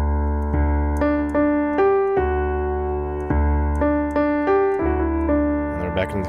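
Piano played with both hands: low left-hand octave bass notes on D, restruck about every second, under right-hand notes that change about every half second.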